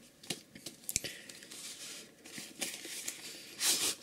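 A white cardboard sleeve sliding off a textured watch box: faint rustling and rubbing of card, a few light knocks as the box is handled, and a louder scrape of card near the end.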